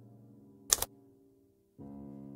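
Soft piano music with a held chord fading away, cut by a sharp double click a little under a second in; a new piano chord comes in near the end.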